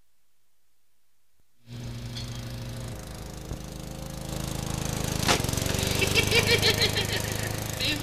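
A small petrol engine, a lawn mower's, starts up about two seconds in and runs with a rapid, even chugging that grows louder, with a sharp click a little past halfway. Near the end a man's voice speaks and laughs over it.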